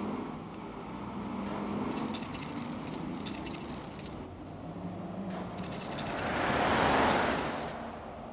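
City street traffic, with one vehicle passing that swells and fades about six to seven seconds in, over a light metallic jingling.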